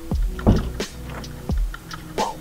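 Background music: a beat with deep bass thumps and held chord tones.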